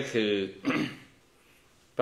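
A man's voice says one short word, then clears his throat briefly about half a second later.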